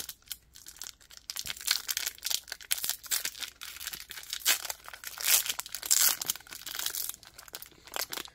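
Foil wrapper of a chocolate bar crinkling and tearing as it is peeled open by hand, in short irregular crackles.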